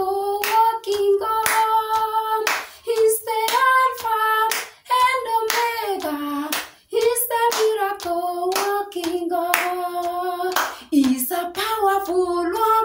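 A woman sings a lively gospel song with no instruments, her voice moving from note to note in short phrases. Sharp hand claps keep the beat throughout.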